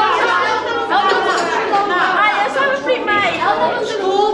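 Several voices talking over one another at once, a woman and teenage girls among them.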